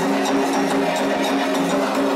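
Candomblé ritual drumming for the orixás' dance: atabaque hand drums and a struck metal bell playing a steady dance rhythm, with a sustained pitched sound underneath.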